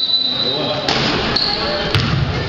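A basketball hitting a hardwood gym floor, two sharp knocks about a second apart, among long high steady squeals and faint voices echoing in the gym.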